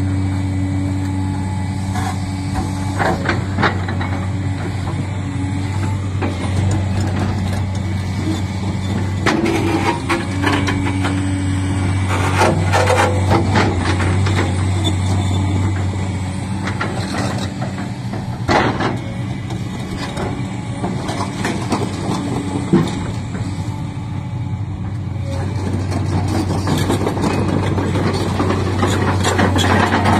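JCB 380 tracked excavator's diesel engine running steadily under working load, with several knocks and scrapes as the bucket works marble blocks in sand, one sharp knock about two-thirds of the way in.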